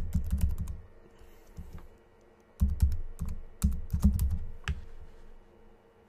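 Keystrokes on a computer keyboard as a keyword is typed in, in two bursts: one in the first second and another from about two and a half to five seconds in.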